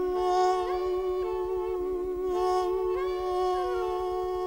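Male jazz tenor voice holding one long final note on 'love', with orchestra chords shifting beneath and around it.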